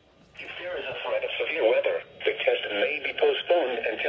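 NOAA Weather Radio broadcast heard through a weather-alert receiver's small speaker: the broadcast voice reading the required weekly test announcement, its sound thin and narrow like a radio. It starts after a short pause right at the beginning.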